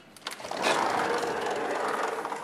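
A sliding door rolling along its track: a few clicks at the start, then a steady rolling scrape lasting about a second and a half.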